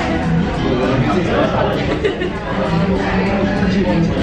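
A man's voice talking over background music, with a short laugh near the end.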